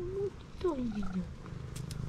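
Tabby cat purring steadily as it is stroked, with a short call right at the start and then a longer meow that falls in pitch about half a second in.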